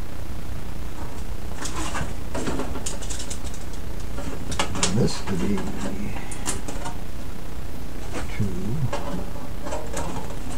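Pencil scratching and small taps and knocks as a white box is marked and handled on a workbench, over a steady low hum.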